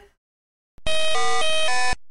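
A short electronic jingle: four steady synthesized notes of about a quarter second each, stepping in pitch, starting a little under a second in and cutting off abruptly.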